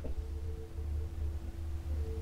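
Low steady hum with a faint steady tone above it, room tone, and one faint click right at the start.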